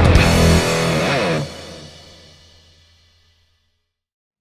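Electric guitar heavily fuzzed through a stack of One Control pedals, played loud with a pitch slide about a second in. The playing stops abruptly and the sound dies away to silence.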